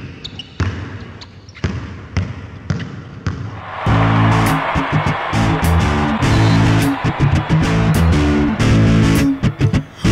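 Opening of a hip-hop song: a basketball bouncing, one knock about every half second. About four seconds in, a loud beat with heavy bass comes in.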